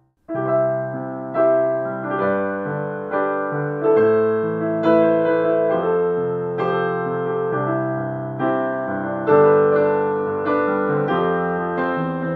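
Yamaha Clavinova CLP700-series digital piano playing a slow passage of melody over chords. It starts fresh just after a cut, with new notes struck about once a second and left to ring and fade.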